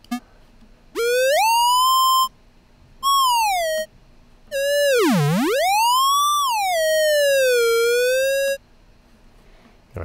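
Square-wave oscillator in a Max mouse-theremin patch, sounding in three separate notes that start and stop abruptly as the mouse button is pressed and released. Each note glides in pitch with the mouse: the first rises, the second falls, and the long last one swoops down very low, climbs high again and settles back to a middle pitch.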